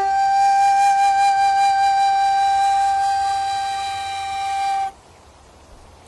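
Tin whistle holding one long high note, an octave above the note before it, for about five seconds, then stopping abruptly as the melody ends.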